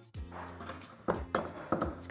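Background music with a steady low bed, plus a few light knocks as a plastic cheese press is slid across a countertop.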